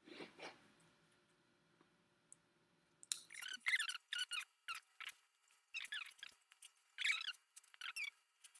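Rose stems being pushed into wet green floral foam, making a run of short, high squeaks that starts about three seconds in.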